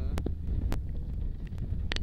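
Wind buffeting the microphone, a steady low rumble, with a few sharp clicks and brief snatches of voices near the start and end.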